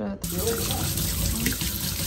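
Water running from a kitchen tap into a stainless steel sink, splashing over a small ceramic dish rinsed by hand under the stream. It starts abruptly just after the start and runs on steadily.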